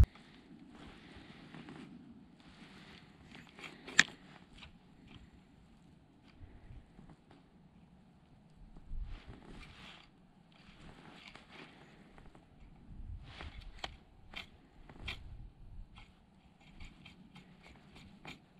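Faint rustling and scraping of winter clothing and snow as an ice angler moves and jigs his rod, with one sharp click about four seconds in and a few lighter clicks later on.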